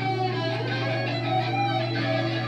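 A band playing a slow, sustained passage: long, held electric guitar notes layered over a steady low drone, with no drum beat.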